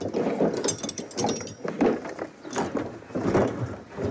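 Rummaging through wooden drawers and cupboards: irregular clattering, knocking and scraping of wood and the things inside.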